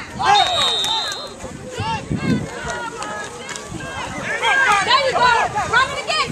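Sideline spectators yelling and cheering with many voices overlapping as a football play runs. A brief, high, steady whistle tone sounds about half a second in.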